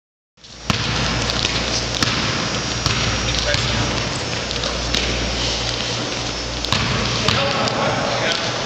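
A basketball bouncing on an indoor court floor in several sharp, irregularly spaced bangs during a game, over players' voices and a steady, echoing gym din.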